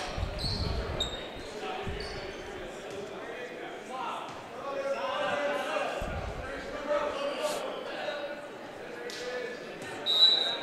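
Murmur of spectators talking in a gymnasium, with a few dull thumps of a volleyball bouncing on the hardwood floor, near the start, about two seconds in and about six seconds in.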